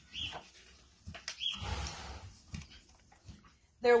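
A pony blowing and snuffling at the hay, with one short noisy snort about a second and a half in.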